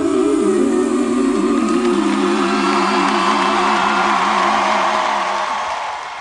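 Live pop ballad ending on a long held final chord of voices and band, the pitch wavering slightly, fading out near the end.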